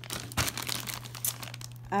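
Crinkling and rustling of plastic grocery packaging being handled, with a sharper crackle about half a second in.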